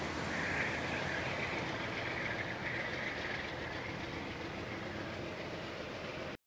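Steady rumble of a passenger train moving away down the track, with a higher hiss standing out for about the first three seconds.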